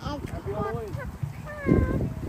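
High-pitched vocal sounds from a small child: short squeals and babble that glide up and down in pitch. A louder low-pitched noise comes near the end.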